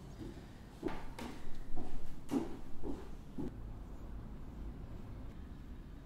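A quick run of knocks and clatters from painting tools being handled on a wooden desk, about a second in and lasting a couple of seconds, as one brush is put down and another picked up.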